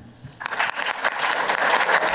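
Audience applauding, beginning about half a second in and continuing steadily.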